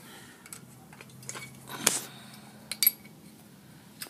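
Handling noise from a carburetor being turned over in the hand: a few light clicks and knocks, with the sharpest about two seconds in and another just before three seconds.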